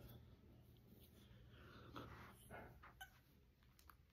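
Near silence: faint room tone with a few soft breaths and small movement sounds, loudest about two seconds in, from a man resting between push-up sets.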